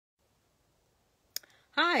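Near silence, broken about a second and a half in by one short, sharp click, and then a woman's voice starts near the end.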